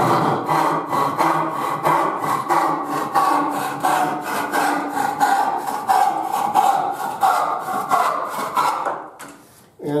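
An old family handsaw cutting through a board clamped in a wooden bench vise with quick, even push-and-pull strokes. The cutting stops about nine seconds in. The saw is sharp and cuts readily.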